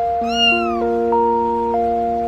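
A very young kitten gives one short, high mew that falls in pitch, about a quarter second in. It sounds over background music of plinking notes.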